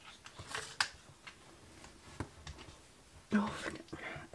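A faint breathy exhale about half a second in, a few soft light taps, and a short murmured vocal sound near the end, from a woman working quietly.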